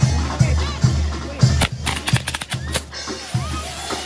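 Mexican banda music with a steady bass-drum beat, about two and a half beats a second. Near the middle, a quick run of sharp cracks from a hand-held firework spraying sparks cuts through it.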